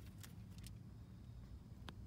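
Near silence: room tone with a faint low hum and one short click near the end.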